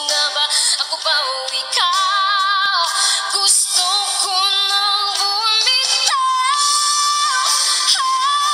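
A woman singing solo into a microphone, holding long notes with vibrato, the longest starting about six seconds in.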